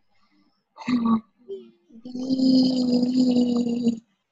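A person's voice without words: a short vocal sound about a second in, then a long, steady, held vocal sound on one pitch for the last two seconds, like a drawn-out 'hmm' or 'ooh'.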